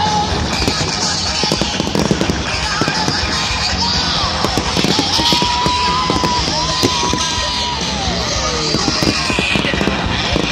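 A fireworks display crackling and banging continuously over loud rock music. A long held high note slides down near the end.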